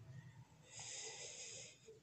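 A man's faint breath, a soft hiss about a second long that starts just over half a second in.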